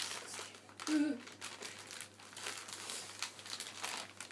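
A plastic wet-wipe packet and the wipes crinkling and rustling as they are handled, in quick irregular crackles.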